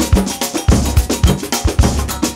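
Samba percussion playing on its own, with no melody: drums and other hand percussion keeping a fast, steady beat, with low drum strokes about four to five times a second.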